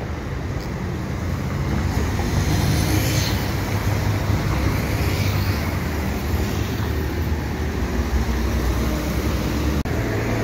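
A steady low rumble like a motor vehicle's engine running, with an even background noise.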